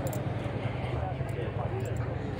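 Background voices of people talking at a distance, no single speaker clear, over a steady low rumble.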